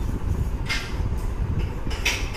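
Steady low rumbling noise, with a short higher clatter about 0.7 s in and another at the end.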